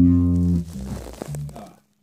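Electric bass guitar: a low plucked note rings strongly for about half a second, then is damped, followed by a quieter short note about a second and a half in that dies away.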